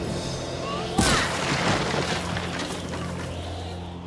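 Cartoon sound effect: a sudden boom about a second in, then a whooshing rush that fades away over the next two seconds, with background music running underneath.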